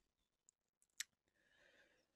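Near silence: room tone, broken by one short faint click about a second in.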